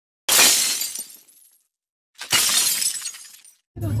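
Glass-shattering sound effect, heard twice about two seconds apart: each a sudden crash that dies away over about a second.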